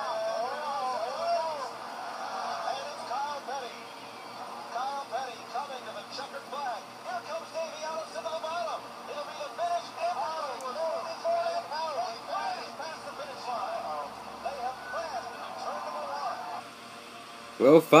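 NASCAR race broadcast playing on a television: commentators talking over the steady noise of the cars, heard through the TV's speaker and quieter than a voice close to the microphone.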